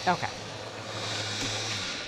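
Countertop blender motor running steadily as it blends an ice cream base, then switching off and winding down near the end.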